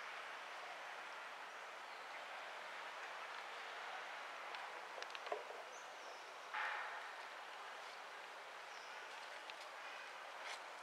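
Faint, steady outdoor background hiss, with a few small clicks about five seconds in and a short, louder rustle-like burst a little past the middle.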